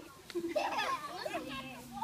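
Children's voices at play: overlapping chatter and calls from several kids.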